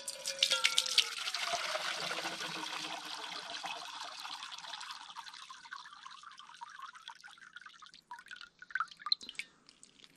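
Water running out of a rain-gutter downpipe and splashing into a handheld enamel pan, loudest about a second in, then thinning to a trickle and scattered drips near the end. This is a flow test of the freshly reinstalled gutter.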